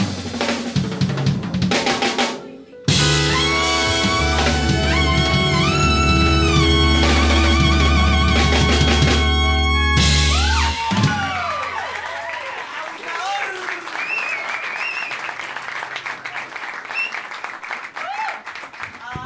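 A Latin jazz band with horns, piano, bass and drums plays the last bars of a tune: driving rhythmic playing, a brief break, then a long held closing chord with the horns sustaining and shaking their notes, cut off together about eleven seconds in. Audience applause and whooping cheers follow.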